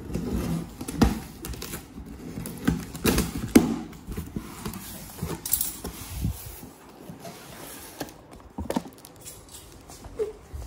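A large cardboard appliance box being handled and opened: irregular knocks, bumps and scrapes of cardboard, the loudest in the first four seconds.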